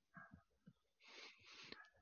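Near silence, with a few faint soft ticks and a faint breath-like hiss in the second half.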